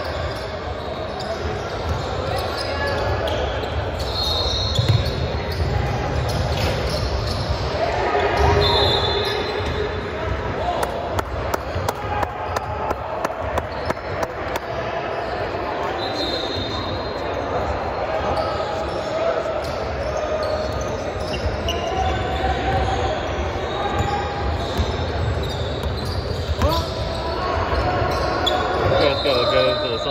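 A basketball dribbled and bouncing on a hardwood gym floor during play, with brief high squeaks from shoes on the court, all echoing in a large hall.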